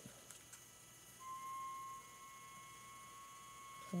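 Quiet room tone with a faint, thin, steady whine that starts about a second in and holds until just before the end.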